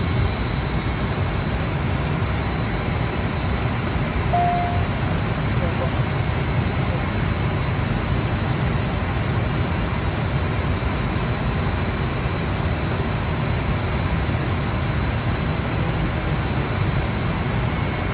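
Steady rushing cockpit noise of a private jet in cruise, heaviest in the low end, with a thin steady high whine running through it. A short tone sounds once, about four seconds in, lasting about half a second.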